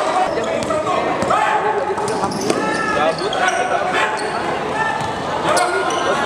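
A basketball being dribbled on an indoor court during live play, with players' and bench voices calling out, echoing in a large sports hall.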